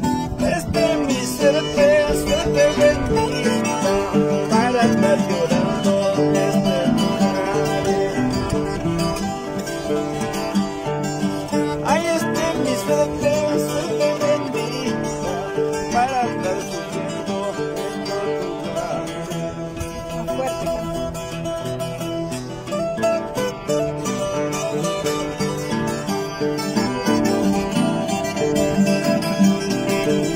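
Andean huayno music played on acoustic guitars, with plucked melodic lines running throughout.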